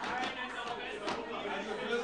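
Indistinct chatter of several voices across a parliament chamber, faint against the main speaker's microphone: members murmuring and calling out from the floor.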